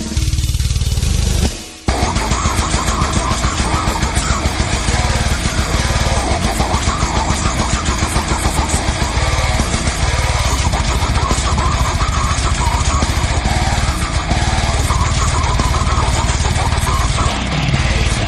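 Slam metal band playing loud with fast, dense drumming. The band cuts out for a moment just under two seconds in, then comes back in at full level.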